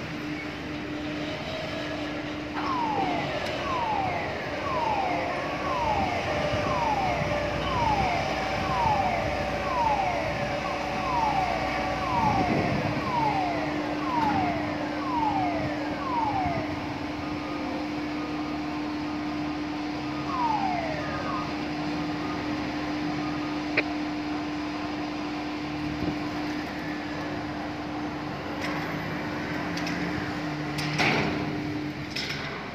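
Steady machinery hum of port cargo-handling equipment. Over it runs a series of short falling squeal-like tones, about one a second, through the first half and once more near the middle.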